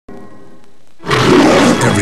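A faint steady hum, then about a second in a loud roar comes in suddenly and holds: the start of a film trailer's soundtrack.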